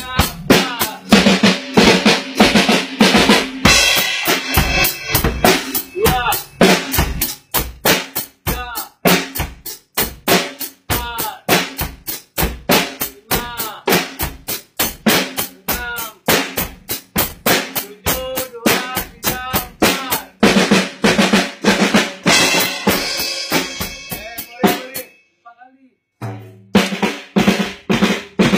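Drum kit played in a fast, steady run of hits, with pitched musical sounds between the strokes. The playing stops briefly near the end, then starts again.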